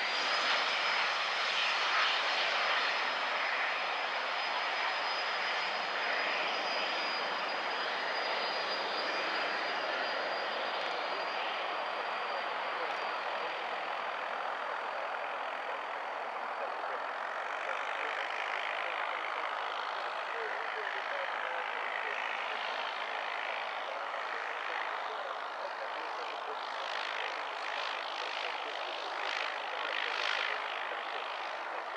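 Small twin-engine business jet's turbofans at take-off power: a high, steady whine over a loud, even roar as the jet accelerates down the runway, lifts off and climbs away.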